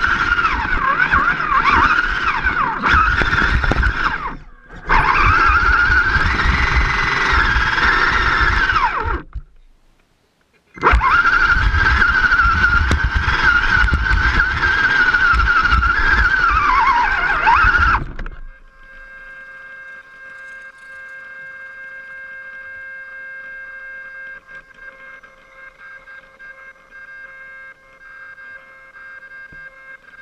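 Electric motor and geartrain of an RC rock crawler whining under throttle, the pitch rising and falling as it drives. It cuts out briefly twice, then stops about 18 seconds in, leaving only a faint steady electronic hum.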